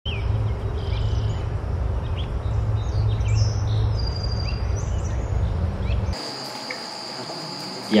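Outdoor ambience: scattered bird chirps over a steady low rumble. About six seconds in, the rumble cuts off and a steady, high insect drone carries on alone.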